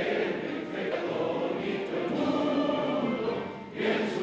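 A large standing crowd singing a national anthem together.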